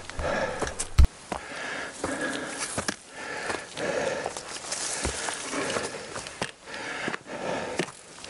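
A hiker breathing hard in rhythmic swells and stepping on a dirt trail while climbing a steep uphill stretch, with a sharp knock about a second in.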